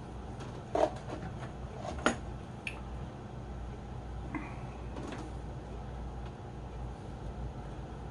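Handling noise from small plastic fishbowl-filter parts being picked up and set down: a few light clicks and knocks, the sharpest about two seconds in, over a low steady room hum.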